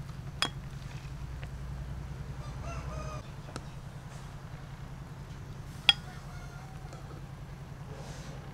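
Two sharp metal clinks of a ladle against the soup pot, about half a second in and again near six seconds, over a steady low hum. A chicken calls briefly around three seconds, and again more faintly after six.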